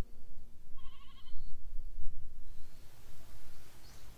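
A sheep bleats once about a second in, a short quavering call, over low background noise.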